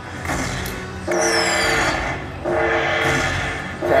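Video slot machine playing its bonus-tally music as collected orb values are added to the win. About a second in there is a falling high chime, followed by repeated two-note tones in short spells.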